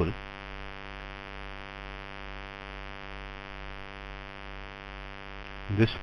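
Steady electrical mains hum with many harmonics, unchanging between pauses in a voice recording.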